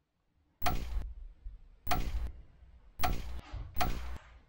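A ticking sound effect: four sharp ticks about a second apart, each ringing briefly.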